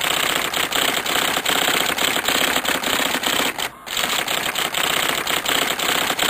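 Typewriter keys clacking in a quick, steady run of strikes, about four or five a second, with one brief pause partway through.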